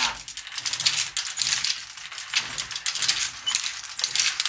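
Marble Machine X running, its steel marbles clicking and clattering through the mechanism in a dense, irregular stream of small metallic impacts. The machine turns freely now that the clamp that held its gear is off.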